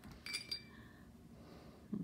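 A paintbrush clinks a few times in quick succession against a hard container, with a short bright ring, as the brush is knocked against the rim while painting.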